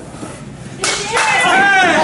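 A single sharp slap about a second in, followed at once by a loud drawn-out yell that wavers in pitch.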